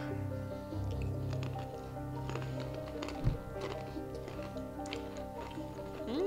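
Soft background music with long held notes, under faint crunching of crackers being chewed.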